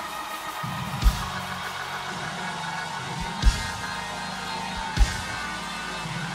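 Worship music: sustained keyboard chords with a few heavy drum hits spaced about a second and a half to two seconds apart.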